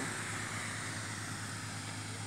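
Steady outdoor background noise: a constant low hum with a faint high hiss above it.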